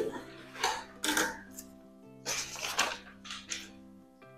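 Scissors cutting through a paper pattern, several short rasping snips, over steady background music.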